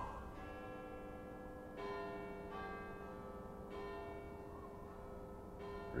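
Large tower bell tolling slowly: four strikes about two seconds apart, each ringing on into the next. It is a clock striking midnight.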